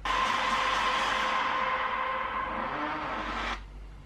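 Trailer sound effect: a loud, even rushing noise with a steady tone underneath, starting suddenly and cutting off about three and a half seconds in.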